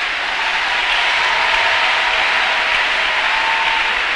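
Large congregation applauding, a steady clapping that has built up just before.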